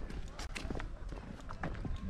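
Footsteps of someone walking on dry grassy ground, an uneven run of short scuffs and knocks, over a low steady rumble.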